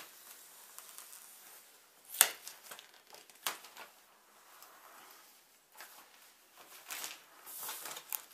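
Scissors cutting plastic film packaging, with a few sharp snips, the loudest about two seconds in. Near the end comes a stretch of crinkling as the plastic wrap is pulled back.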